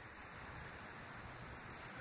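Faint steady background hiss of room tone, with no distinct sound events.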